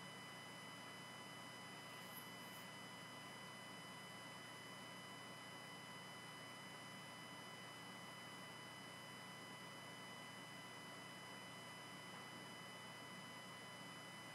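Near silence: a steady hiss with a few faint, steady high-pitched tones running through it.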